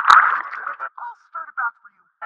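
A cartoon character's voice run through heavy audio effects, filtered thin like a radio, with a sharp click at the start. It breaks up into short warbling syllables that trail off near the end.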